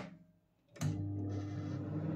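LG Intellowave microwave oven switching on with a click a little under a second in, then running with a steady electrical hum.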